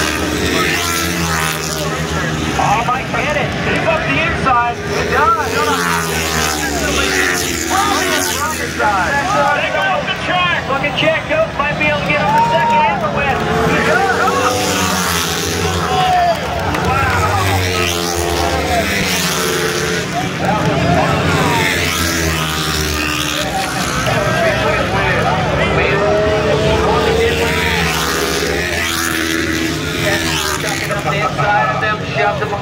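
Flat-track racing motorcycle engines revving and passing along the straight, their pitch swooping up and down as each bike goes by.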